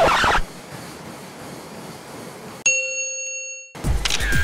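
A single clean bell-like ding, a chime that rings for about a second and then stops abruptly, about two and a half seconds in. A short loud burst of noise comes right at the start, and low hiss lies between the two.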